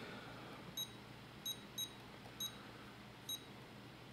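Futaba 14SG radio-control transmitter giving five short, high key beeps at uneven intervals as its jog dial is pressed and turned through a menu. Each beep confirms a button input.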